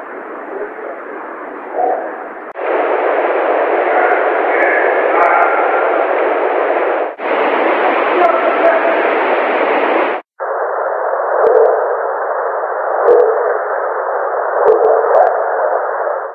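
Audio recordings presented as male and female Sasquatch speech: heavy hiss cut to a narrow, radio-like band, with faint voice-like chatter in it. They play as several short clips spliced together, each starting and stopping abruptly, with changes about 2.5, 7 and 10 seconds in.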